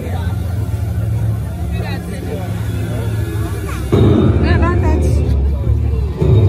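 Low, steady rumble with indistinct voices over it; the rumble grows suddenly louder about four seconds in.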